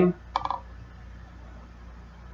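Quiet room tone with a brief soft clicking about half a second in.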